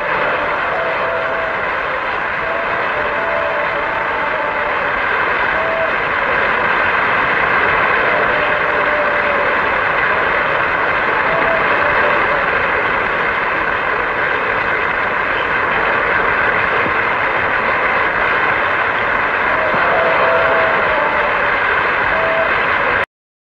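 A large concert-hall audience applauding steadily at the end of an operatic aria with orchestra.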